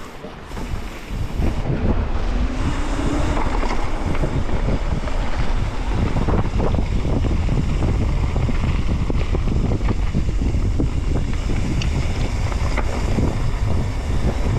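Wind buffeting the microphone of a helmet-mounted camera on a downhill mountain bike, with tyres rolling over a dirt trail and short rattles and knocks from the bike over bumps. It is quieter for about the first second and a half, then steady and loud.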